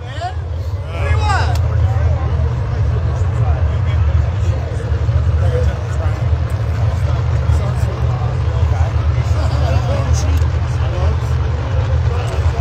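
No-prep drag race cars' engines at full throttle down the strip, heard from the grandstand as a steady low rumble, with crowd chatter over it.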